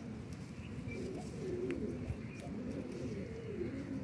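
Domestic pigeons cooing in a run of low, repeated phrases, with a couple of faint ticks.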